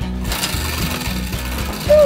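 A tabletop prize wheel spun by hand, its pointer clicking rapidly against the pegs as it turns, over background music.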